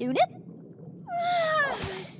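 A cartoon vegimal's squeaky, cat-like cry. It starts about a second in and slides down in pitch for just under a second as the character faints and topples over.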